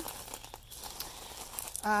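Irregular rustling and crinkling noise with a few faint clicks.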